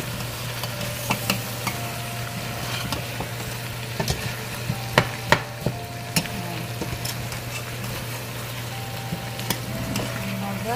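Chicken pieces frying in their own rendered fat in a stainless steel pot, sizzling steadily while a cooking spoon stirs them and clicks and knocks against the pot, the knocks loudest about five seconds in.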